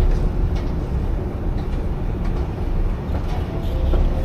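Escalator running, a low uneven rumble with a few faint clicks. Background music with held notes comes in near the end.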